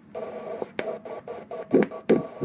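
Ultrasound machine's Doppler audio switching on with a hiss and clicks, then picking up a fetal heartbeat as rhythmic whooshing pulses about three a second, the strongest near the end.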